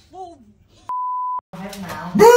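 A censor bleep: one steady beep of about half a second, a little under a second in, with the rest of the sound muted around it, covering a word. Brief voice sounds come before it.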